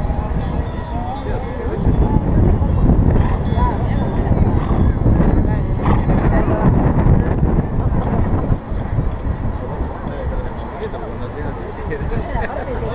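Wind buffeting the microphone of a head-mounted camera, a heavy rumbling roar, with faint voices of people standing nearby.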